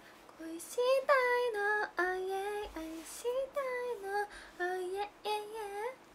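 A young woman singing a tune on her own, unaccompanied, in short phrases of a few notes with brief breaks and sliding pitches between them.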